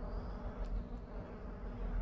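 Faint, steady low hum and hiss of background noise.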